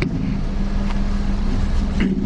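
Steady room noise: a constant low hum under an even rushing hiss, with one faint tick about a second in.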